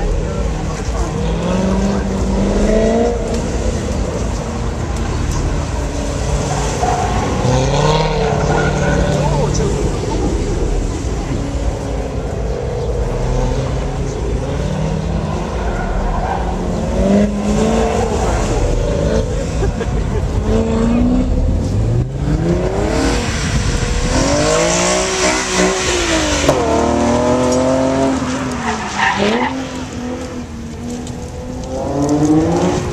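Car engines on a tight cone course, revving up and dropping back again and again as the car accelerates and slows between turns. In the last part a second car runs the course, its engine rising and falling under a long stretch of tyre squeal.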